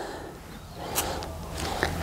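Quiet pause filled by a faint breath and rustle close to a clip-on microphone, with one small click about a second in.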